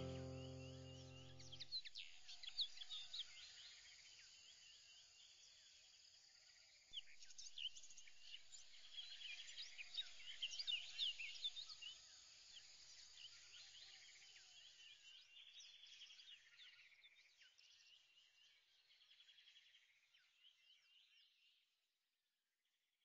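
A held music chord dying away in the first two seconds, then faint birds chirping: many short, high calls that gradually fade out near the end.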